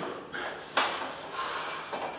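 Three short, noisy breaths in quick succession from a powerlifter straining under a heavily loaded bench-press bar.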